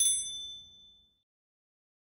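Notification-bell 'ding' sound effect: a single bright, bell-like ding that rings and fades away within about a second.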